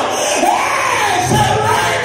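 A preacher's amplified voice shouted and half-sung in long, arching phrases that swoop up and down in pitch, the chanted climax of a sermon, with the congregation calling out behind him.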